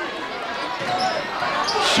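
A basketball being dribbled on a hardwood gym floor, with the steady murmur of a large crowd in the hall.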